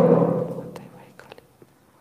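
A man's voice trails off and fades within the first half second, leaving a quiet room with a few faint clicks.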